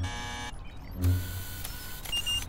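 Electronic scanning sound effect: a buzzy tone for about half a second, then a whirring hiss with a steady high note, over soft low thumps about a second apart.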